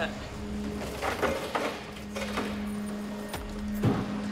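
Sustained low background music drone over the scuffling and grunting of officers wrestling a struggling man out of a patrol car and down to a concrete floor, with a sharp thump near the end.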